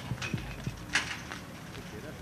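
Faint background noise with a few soft clicks, in a pause between spoken phrases.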